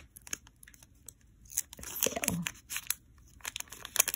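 Foil wrapper of a Pokémon TCG booster pack being torn open by hand, crinkling and crackling in scattered bursts that are busiest around the middle.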